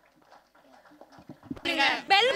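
Near-quiet room with faint scattered sound, then about one and a half seconds in a loud voice with wavering pitch starts suddenly, opening the end-card audio.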